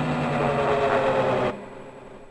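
A sustained electronic synth tone with several layered pitches, some slowly falling, that cuts off abruptly about one and a half seconds in and leaves a faint fading tail.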